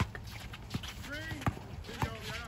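A basketball bouncing twice on an outdoor hard court, about a second apart, with faint shouts from the players.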